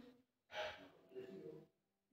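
A person's voice, faint: a quick breath in about half a second in, followed by a few quiet spoken syllables.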